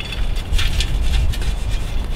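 Lit lump charcoal tipped out of a chimney starter onto a camp oven lid, the coals tumbling and scraping in a quick run of clicks and rattles, over a steady low rumble of wind.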